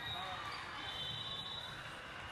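Busy volleyball hall: balls bouncing on the hardwood courts and many voices chattering, with a high, thin held tone from about half a second in.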